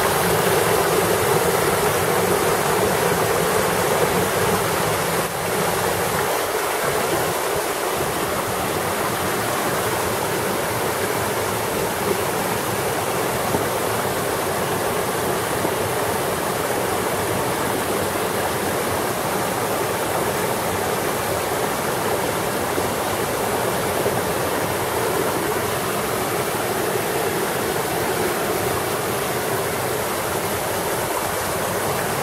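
Mountain stream running and splashing over boulders: a steady rush of water, a little louder for the first five seconds.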